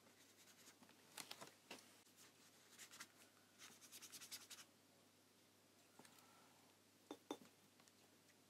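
Faint scratching of a water brush tip stroking and dabbing watercolour onto sketchbook paper in quick clusters of short strokes, followed by two small clicks near the end.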